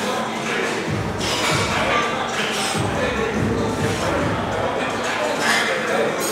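Busy gym background: music playing and other people talking, with some shuffling.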